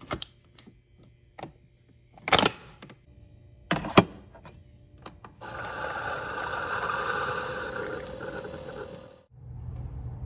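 Keurig K-Duo coffee maker: a K-cup pod set into the holder with small clicks, a clunk about two and a half seconds in and a sharp click near four seconds, then the brewer running for about four seconds, pump humming and coffee streaming into a mug, cut off suddenly near the end.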